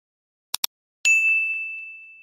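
Subscribe-animation sound effect: two quick mouse clicks, then a single bright notification-bell ding that rings out and fades over about a second.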